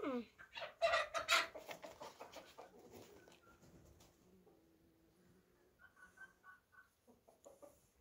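Chicken calling: a loud run of sharp clucks about a second in that trails off over the next two seconds, then a short run of four quick higher clucks near the six-second mark.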